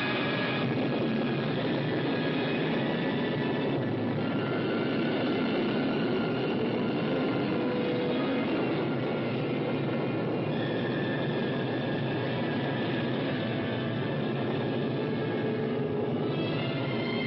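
Film sound effect of a rocket engine firing: a steady rushing noise with faint high tones over it, which shift about half a second in and again past the middle.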